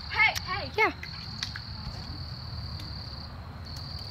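Insects trilling in one steady high-pitched note, breaking off briefly a little after three seconds in.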